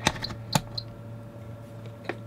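Fluke 77 multimeter's rotary selector switch clicking through its detents as it is turned back to DC volts: three sharp clicks within the first half-second or so, then a fainter one.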